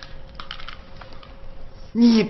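Faint handling sounds: a scatter of light clicks and soft rustles as a plush toy is clutched and grabbed at, over a faint steady hum.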